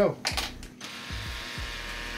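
A few handling knocks as a cordless drill is picked up. Then, just under a second in, the drill's motor runs steadily, spinning the chuck while the paddle bit is being fitted.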